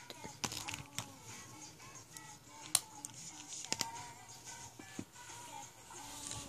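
A few faint, sharp clicks and taps of felt-tip markers being handled and uncapped over a sketchbook, the loudest a little under halfway through. Faint music plays underneath.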